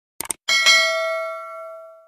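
Sound effect of a mouse double-click, then a bright bell ding that rings and slowly fades away: the click-and-notification-bell of a subscribe-button animation.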